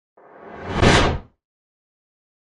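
A whoosh sound effect that swells over about a second and then cuts off.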